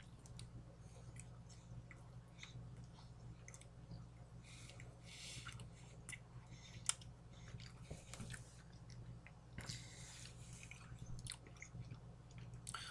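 A person biting into and chewing a soft cold-cut sub on a white roll: faint, irregular wet clicks and smacks, with one sharper click about seven seconds in, over a steady low hum.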